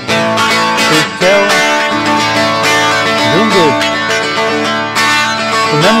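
Telecaster-style electric guitar playing a steady country-rock accompaniment in an instrumental gap between sung lines of a song.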